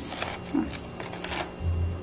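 Thin plastic bag crinkling a couple of times as a hand reaches in and lifts out a frozen puck of tomato sauce.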